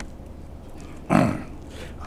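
A man clearing his throat once into a podium microphone about a second in: a short, rough, falling grunt over a low background hum.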